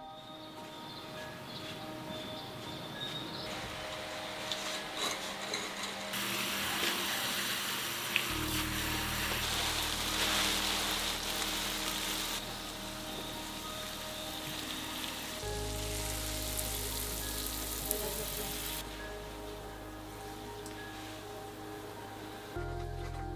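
Garden hose spraying water onto plant leaves: a steady rain-like hiss that swells in two long stretches. Soft ambient music with sustained tones plays underneath, with deep bass notes coming in about a third of the way through.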